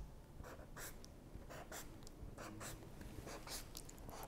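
A marker drawing check marks on a chalkboard: a series of short, faint strokes, a few each second.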